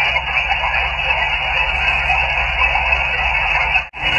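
HF band static hissing steadily from a Guohetec Q900 transceiver's speaker as it receives on single sideband, with no station answering a CQ call. The hiss cuts off abruptly just before the end.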